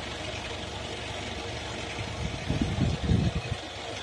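Wind rumbling on the microphone, with a few stronger gusts buffeting it in the second half.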